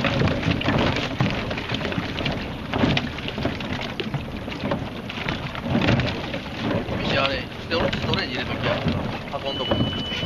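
Boats' outboard motors running at a dock, a dense, uneven noise, with indistinct voices in the background.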